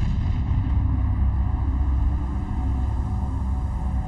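Soundtrack sound design: a deep, steady rumble, with faint ominous music under it.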